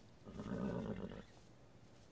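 A horse neighs once, a call about a second long.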